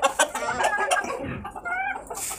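Black, white-crested Polish chickens clucking, with a short rising call near the end.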